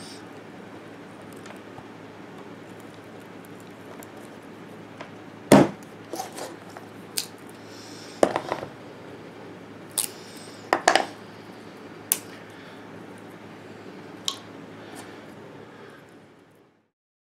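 A fixed-blade knife chopping and splitting sticks of resinous fatwood against a wooden board: about ten sharp knocks and cracks at irregular intervals, the loudest about five and a half seconds in, over a steady background hum.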